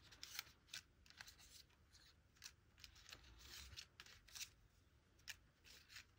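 Faint rustling and crinkling of die-cut paper pieces being sorted through by hand, a scatter of short, irregular crackles and clicks.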